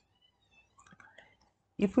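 A quiet pause holding a few faint clicks and soft mouth sounds, then a man's voice starts speaking near the end.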